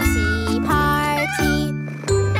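A cartoon kitten meows over a children's nursery-rhyme song, with a sung line and steady backing music.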